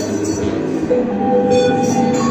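Live experimental electronic drone music: a dense low drone under several long held tones, with a new held tone coming in about a second in.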